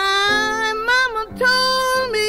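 A woman's blues vocal holding a long note that slides up into pitch and bends, then a second sustained note with vibrato, over piano chords.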